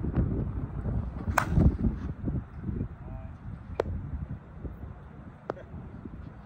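A Monsta TruDOMN8 slowpitch softball bat striking a softball once, a sharp crack about a second and a half in, with wind rumbling on the microphone throughout. Two fainter clicks follow later.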